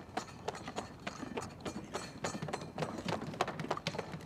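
Footsteps of a person running on pavement: a quick, uneven run of short taps and clicks.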